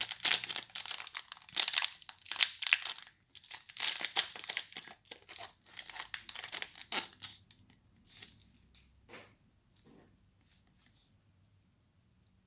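A foil Pokémon trading card booster pack wrapper being torn open and crinkled, in two dense spells of crackling over the first seven seconds. A few faint rustles follow and fade out.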